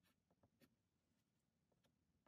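Near silence, with a few faint scratches of a soft pastel stick stroking across toned paper.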